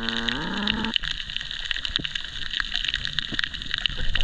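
Underwater sound picked up by a submerged camera: a steady muffled hiss of the sea with scattered clicks and crackles. In the first second there is a short, muffled, voice-like tone that rises in pitch.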